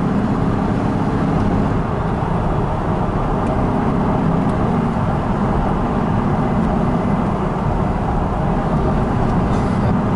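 Steady low rumble of a car's engine and road noise while cruising, heard from inside the cabin.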